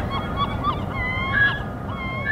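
A flock of birds calling: many short, overlapping calls, with a longer held call about one and a half seconds in.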